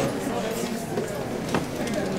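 Indistinct murmur of people talking among themselves in a room, with a single sharp knock about one and a half seconds in.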